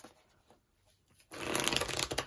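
A deck of tarot cards being shuffled by hand, starting about a second in as a fast, dense run of papery clicks after a near-silent moment.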